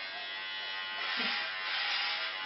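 Electric hair clippers running with a steady buzzing hum as they shave long hair off a scalp. The sound turns harsher and hissier from about a second in as the blades cut through the hair.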